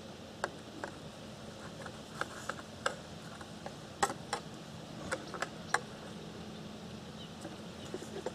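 Light clicks and taps of a metal utensil against a plate as a toasted sandwich is cut and moved about: about a dozen short, scattered knocks over a quiet steady background.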